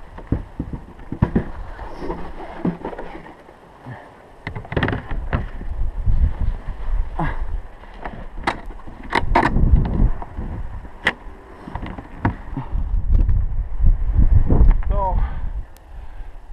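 MaxxAir II plastic RV vent cover being handled and fitted onto its roof brackets: a run of sharp clicks and knocks, thickest in the middle, over a low rumble of wind buffeting the microphone.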